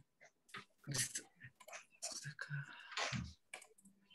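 Faint, irregular clicking from a computer, heard over a call, with a few faint snatches of speech in between.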